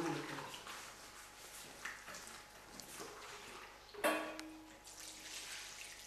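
Liquid poured and scraped from a bowl onto flour in a wooden kneading trough, a soft wet pouring sound. The bowl knocks once about four seconds in, with a short ring after it.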